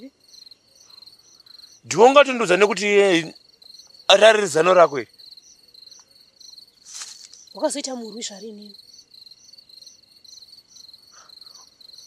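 Crickets chirping: a steady high trill with a quicker pulsed chirping above it, running continuously beneath conversation.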